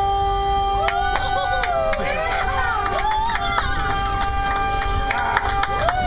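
Duck boat's horn giving one long, steady blast lasting nearly six seconds, the signal for the amphibious vehicle driving into the river, with passengers cheering and shouting over it.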